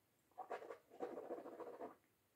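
Faint wet mouth sounds of a sip of whisky being swished and chewed around the mouth, in two stretches: a short one about half a second in, then a longer one of about a second.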